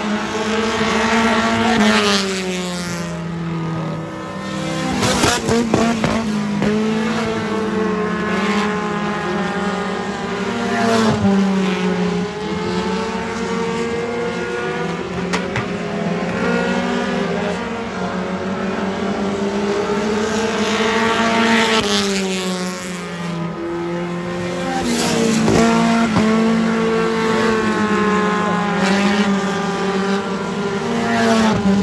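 A field of dirt-track race cars running on the oval, their engines revving up and down. Loud waves of engine noise come every few seconds as the cars pass.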